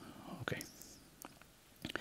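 A quiet pause in a spoken talk: a softly spoken "okay" about half a second in, then a couple of faint clicks near the end, over low room tone.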